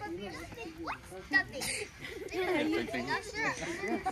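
Several children's voices talking and calling out over one another, indistinct, during a group game.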